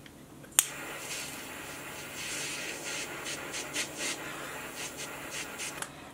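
A lighter clicked alight about half a second in, then its flame hissing steadily for about five seconds as it melts the frayed end of a paracord strand.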